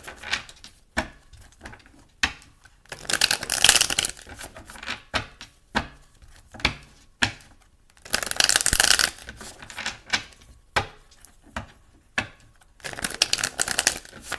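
Tarot deck being shuffled by hand: three runs of rapid card clatter, each about a second long, with single sharp clicks of the cards between them.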